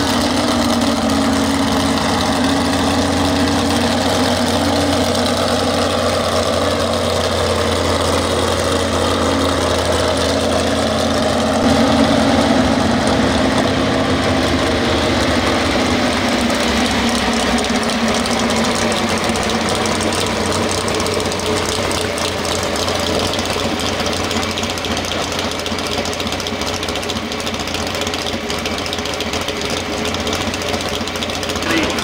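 Pro stock 4x4 pulling truck's engine idling loud and steady, briefly louder about twelve seconds in.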